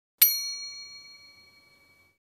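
A single bright bell-like ding, an on-screen-button sound effect, struck once about a fifth of a second in and ringing out, fading away over about a second and a half.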